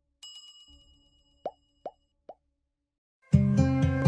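Animated subscribe-button sound effects: a bell-like ding about a quarter second in, then three short rising pops about half a second apart, each fainter than the last. Near the end, background music starts suddenly and is the loudest sound.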